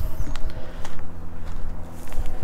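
Footsteps through tall grass, with the stalks rustling, a few soft scattered clicks and a low rumble on the microphone.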